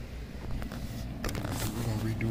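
Faint clicks and short scraping sounds of hands handling wood pieces and tools, over a low steady background hum, busier in the second half.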